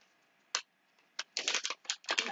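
Plastic blind-bag toy packet being pulled and torn open by hand: a single crackle about half a second in, another just after one second, then a quick run of crinkling crackles near the end.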